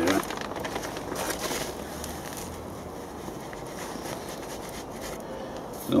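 Handfuls of 6X concentrated manure fertiliser scattered from gloved hands onto loose compost in a plastic wheelbarrow, with a faint crackly patter and rustle mostly in the first couple of seconds.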